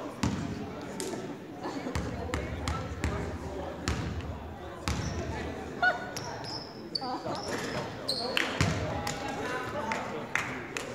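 Basketball bouncing on a hardwood gym floor during free throws: a string of sharp bounces, with short high sneaker squeaks on the court about six to eight seconds in, over voices in the gym.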